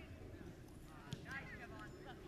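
Faint, distant voices calling out, with a single soft knock about a second in.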